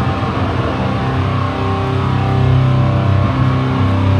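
Live grindcore band playing loud, with heavily distorted guitar and bass. A dense drum passage in the first second gives way to long held low chords.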